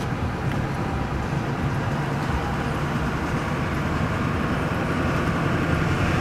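Steady road noise heard from inside a moving vehicle's cabin: engine and tyre hum with wind, rising slightly near the end.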